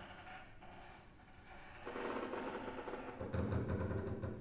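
String trio of viola, cello and double bass playing contemporary music: sparse short, percussive strokes at first, then from about two seconds in a sustained bowed sound in the middle register. A little after three seconds a low note joins and becomes the loudest part.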